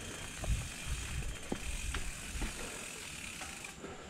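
Mountain bike coasting down a dirt forest trail: the rear freehub's pawls buzz steadily. Low thumps and a few sharp rattles come as the tyres roll over bumps, mostly in the first half.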